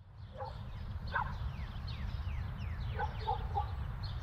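Outdoor rural ambience: a steady low rumble of wind on the microphone under many short, falling bird chirps. A few lower-pitched animal calls come about a second in and again around three seconds in.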